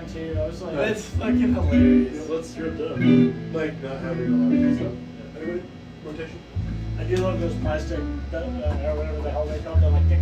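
Guitar playing, plucked and strummed notes, with long low held notes joining in the second half.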